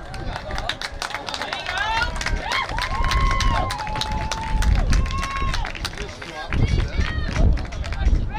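Voices at a football game shouting long, drawn-out calls, several overlapping, with many sharp claps or knocks throughout. Low rumbling swells come in the second half.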